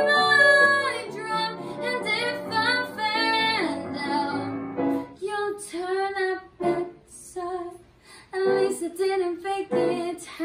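A girl singing solo, in phrases, over an instrumental accompaniment. The accompaniment holds sustained chords under the first half and then thins out, leaving the voice mostly on its own.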